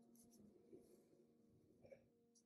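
Faint scratching of a black felt-tip marker on paper as short strokes are drawn.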